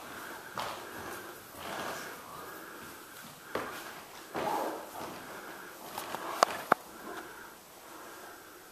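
Soft breaths and sniffs close to a handheld camcorder's microphone in a quiet small room, with two sharp clicks in quick succession about six and a half seconds in.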